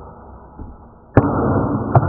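Camera handling noise: a sharp knock about a second in, then loud rushing and rubbing on the microphone, with a second knock near the end.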